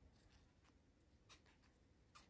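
Near silence, with a few faint clicks and scratches of a thin steel crochet hook working fine thread; one click a little louder just past the middle.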